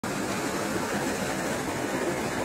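A steady, even wash of noise with no tone, beat or voice in it.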